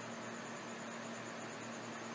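Steady background hiss with a constant low hum and a faint high whine; no distinct events.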